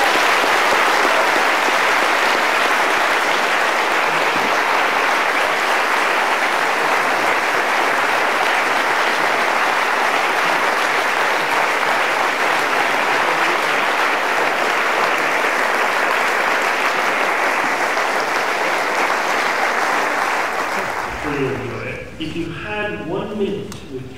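A large audience applauding steadily, dying away near the end.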